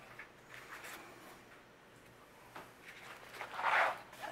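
Pages of a paperback budget planner rustling as it is flipped through, with a louder rustle of paper near the end as the book is laid open flat.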